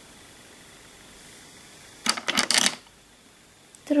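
Steady low hiss, broken about halfway through by a short cluster of sharp clicks and rustles lasting under a second: handling noise from fingers working close to the microphone.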